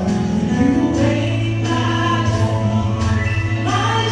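Live gospel worship song: a group of singers over a keyboard backing, voices holding long notes above a sustained bass note.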